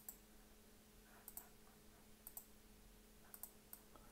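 Faint computer mouse clicks, several coming in quick pairs about a second apart, over near-silent room tone with a faint steady hum.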